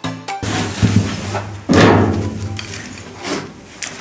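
Background music with plucked notes, cut off about half a second in, then live handling noise of a large metal sheet on a bench, with a loud thump a little before two seconds in.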